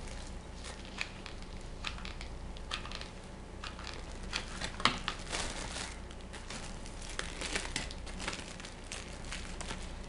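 Clear plastic wrap crinkling in scattered, irregular crackles as hands press and smooth it onto a plastic lid.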